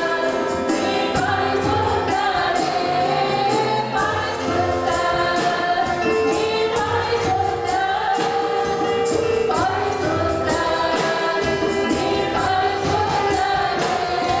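Live gospel worship song: a woman singing lead through a microphone, accompanied by electric keyboard and violin, over a steady beat of high percussive ticks.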